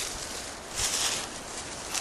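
Low rustling and handling noise over dry leaves and grass, with a brief louder rustle a little under a second in.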